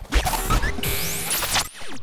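Transition sound effect for a title card: a low boom at the start, then a noisy rising whoosh sweeping up in pitch that cuts off shortly before the end.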